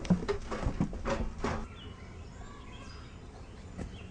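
A few knocks and shuffling sounds in the first second and a half, then faint bird chirps.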